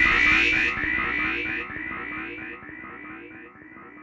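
Psytrance breakdown with no kick drum: a short rising synth figure repeats over and over, fading down and growing duller as its top end is filtered away.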